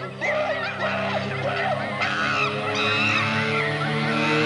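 The opening of a band's album track: sustained low notes under wavering, honk-like high tones, gradually growing louder.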